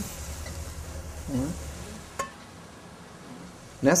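Ground beef with onion and garlic sizzling faintly in a stainless steel pot as it is stirred, with a single sharp clink of the utensil against the pot about two seconds in.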